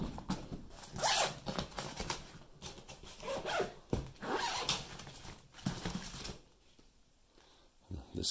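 Zipper on a soft fabric camcorder bag being pulled in a series of short, irregular raspy strokes, stopping about six seconds in.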